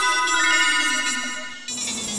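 A rising run of bright chime notes, each one held and ringing on under the next, fading away. Near the end a soft whooshing swell begins.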